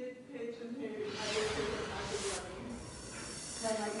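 A burst of hiss, starting about a second in and lasting about a second and a half, over a faint steady hum on the open line of a live remote broadcast feed.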